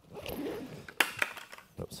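Snap fasteners on a backpack's front pouch being yanked open: fabric rustling, then a sharp pop about a second in and a second pop just after.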